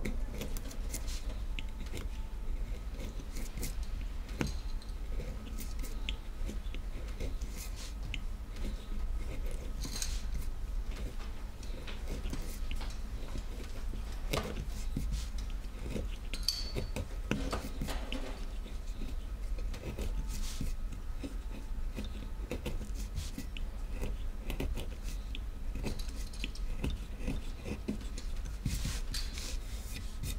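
A small flat chisel cutting into a carved woodblock by hand, pressed straight down into the wood: irregular light clicks and scrapes of the steel blade as wood is sliced away, over a steady low hum.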